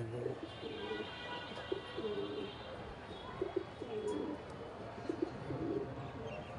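Domestic pigeons cooing: low, rolling coos repeating throughout. A thinner, higher chirping sounds over them in the first couple of seconds.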